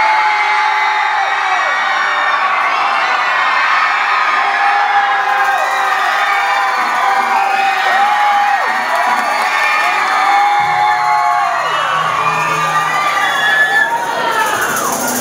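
A large crowd of young people cheering and whooping, many voices overlapping in long held calls with no break.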